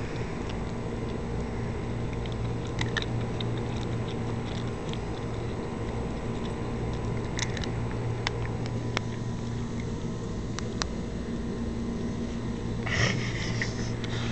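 Senior Italian greyhound chewing a raw chicken wing held in the hand: scattered sharp crunching clicks of teeth on bone and gristle over a steady low hum, with a brief louder noise near the end. The dog is missing many teeth.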